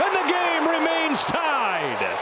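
A baseball broadcaster's voice calling a play at the plate over steady stadium crowd noise; the voice falls steeply in pitch near the end.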